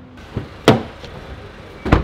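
Two sharp hits about a second apart, the second deeper and heavier, with a softer knock just before the first.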